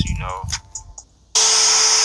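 A spoken voice ends, and after a brief pause a sudden loud, steady hiss like static cuts in about a second and a half in, with a steady hum tone beneath it: a noise effect in the track's intro.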